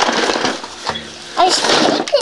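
Small toy snare drum struck irregularly with drumsticks by a small child: a few sharp hits, not in any rhythm. A voice breaks in near the end.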